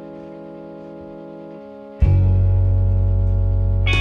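Blues-rock band music: a distorted electric guitar chord rings out and slowly fades, then about halfway through a new, louder chord is struck with bass and held.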